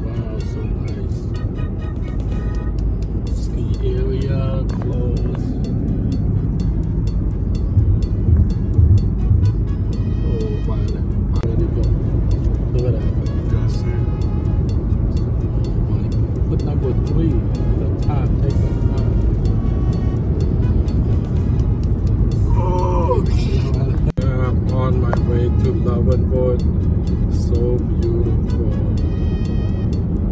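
Steady road and engine rumble of a car driving on the highway, with music playing over it.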